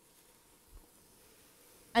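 Near silence: faint room tone with one soft low thump about three-quarters of a second in, then a spoken word at the very end.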